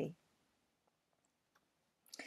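Near silence, with a few faint, short clicks about a second in.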